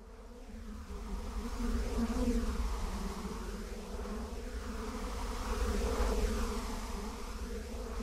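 A steady buzzing like a swarm of hornets, a sound effect under a title card. It swells up over the first two seconds, swells again around six seconds in, and eases off near the end.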